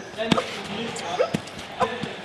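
Several sharp knocks and thumps, irregular and under a second apart, with short snatches of voice between them.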